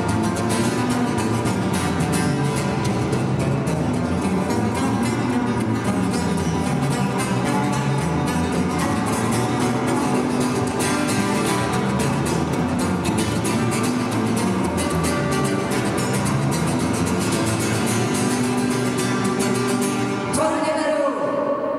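Live music from a strummed acoustic guitar and a bass guitar: dense, rapid strumming over held bass notes at a steady level.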